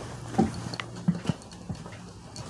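Footsteps thumping on the steps and floor of a passenger van as someone climbs aboard, four or five uneven steps, over a steady low hum.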